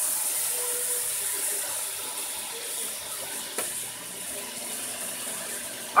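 Deer shoulder meat sizzling as it browns in hot vegetable oil and caramelized sugar in a black cast-iron pot: a steady hiss that eases off slightly, with one light knock about three and a half seconds in.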